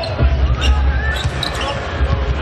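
A basketball being dribbled on a hardwood court, repeated bounces over the steady low rumble of a full arena.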